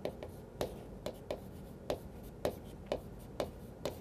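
Chalk writing on a chalkboard: a string of short, sharp taps and scrapes, about two a second, as characters are written.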